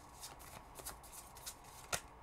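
A tarot deck being shuffled by hand: faint, irregular flicks of cards against each other, with a sharper card snap near the end.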